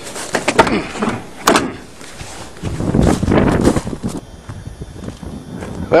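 A car door clunking as it is opened and shut, with two sharp knocks in the first two seconds, followed by irregular shuffling and handling noises.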